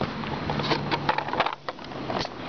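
Skateboard wheels rolling over a concrete sidewalk, a steady rough noise with scattered small clicks and knocks.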